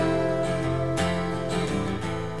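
Acoustic guitar strummed solo, full chords ringing on with a fresh strum about once a second.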